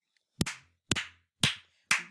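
One person clapping slowly: four single hand claps about half a second apart.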